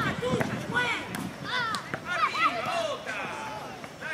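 Voices calling out across a football pitch, fainter than close-up speech, with a few short knocks of a football being kicked.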